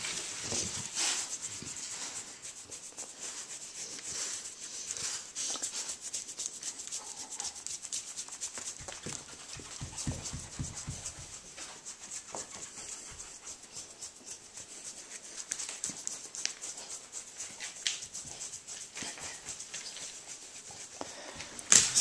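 A dog lying on a wooden floor being rubbed by hand, panting, with irregular scuffs and rustles of fur and paws against the floor.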